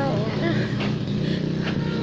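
A motor vehicle engine running steadily with a low hum.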